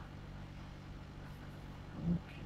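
Quiet, steady low hum of room tone with no distinct event.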